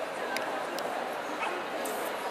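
A dog barking a few short times over a steady murmur of crowd voices in a large hall.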